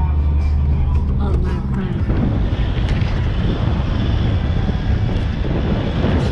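Wind rushing over a camera microphone held out of a moving pickup's window, over the pickup's tyres on a sand track. In the first two seconds a steady low drone sits under it, then the wind noise takes over.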